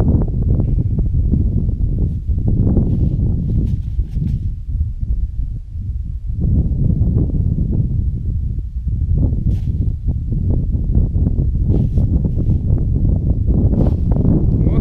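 Wind buffeting the camera microphone on open lake ice, a loud low rumble that swells and eases in gusts. A few faint clicks come through in the second half.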